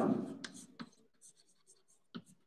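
Chalk writing on a blackboard: a run of short, faint scratches and taps as a word is written stroke by stroke.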